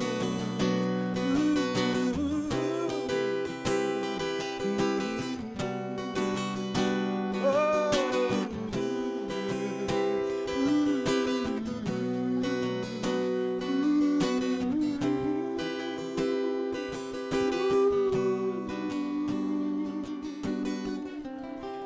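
Acoustic guitar playing sustained chords, with a singer's wordless vocal phrases gliding up and down over it a few times.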